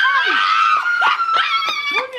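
A woman's long, high-pitched shriek, held for about two seconds and sliding slowly down in pitch, with a few short sharp sounds under it.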